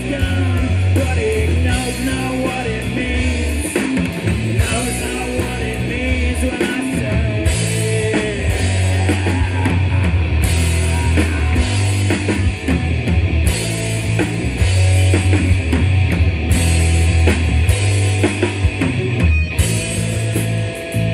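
A loud live rock band: electric guitars, bass and a drum kit playing a grunge cover song through a PA system.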